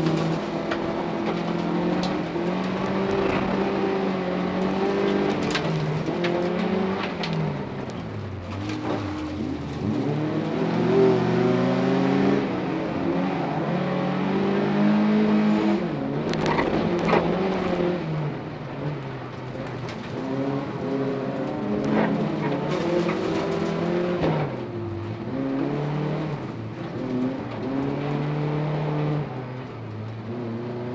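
Folk-race car's engine heard from on board, revving hard and dropping back at each gear change several times over, with sharp knocks scattered through it, loudest about eleven seconds in and again around sixteen to seventeen seconds in.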